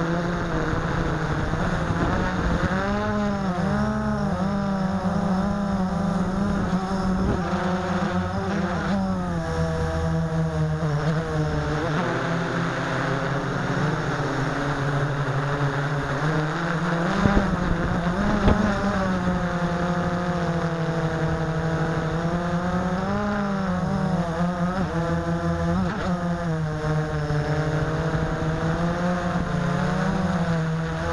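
Blade 350 QX quadcopter's four brushless motors and propellers buzzing, heard from the aircraft itself; the pitch wavers and several tones cross and beat against one another as the motors change speed to steer. Two brief knocks a little past halfway.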